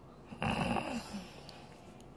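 A short breathy sound from a person's voice, like a snort or harsh breath, lasting about half a second and starting about half a second in.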